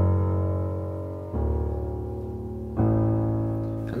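Digital piano playing three low left-hand notes, struck about a second and a half apart, each left to ring and fade.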